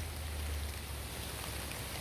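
Steady rain falling, an even soft hiss with no other distinct sound.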